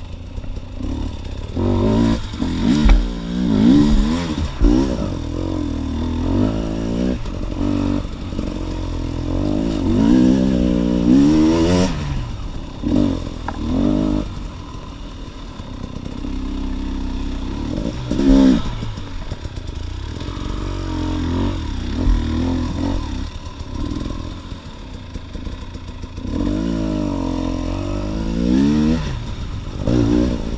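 A 2018 KTM EXC TPI fuel-injected two-stroke dirt bike engine being ridden, its pitch rising and falling again and again as the throttle is opened and closed, with a few sharp knocks from the bike over rough ground.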